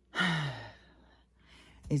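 A woman's heavy, exasperated sigh: a breathy exhale with a voiced tone falling in pitch, lasting about half a second, then a pause before she starts speaking near the end.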